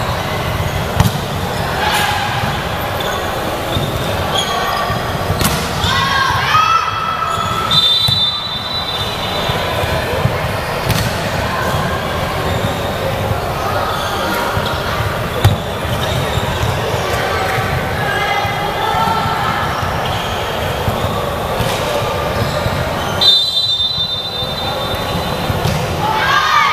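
Volleyball being played in a sports hall: players' voices and calls over a steady din, with the ball struck and bouncing several times. A referee's whistle blows briefly twice, about eight seconds in and again near the end.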